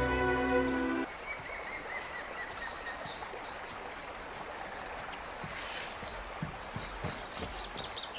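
Film score music that cuts off about a second in, followed by woodland ambience with small birds chirping over a steady outdoor hush.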